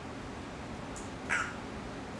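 African grey parrot giving one short, high call, just over a second in, with a faint click shortly before it, over a steady hiss.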